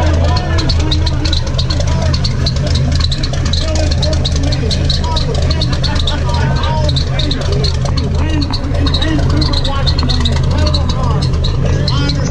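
Low, steady engine idle under the chatter of a crowd of people talking.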